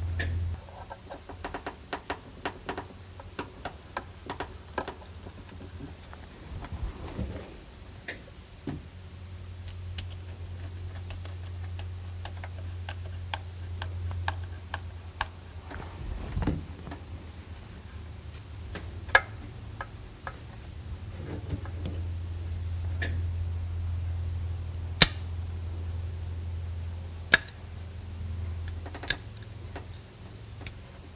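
Small clicks and taps of hands handling a metal canister fuel filter and its rubber hose fittings. The clicks come thickly in the first few seconds, with a few sharper single clicks in the second half. Underneath there is a low hum that comes and goes.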